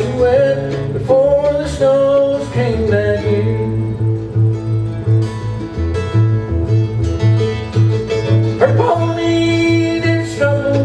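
Live acoustic bluegrass trio playing a song: mandolin and acoustic guitar over a steady pulse of plucked upright bass notes.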